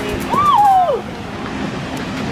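Steady rushing of a waterfall and stream, with wind on the microphone. About half a second in, a woman's drawn-out exclamation rises and then falls away.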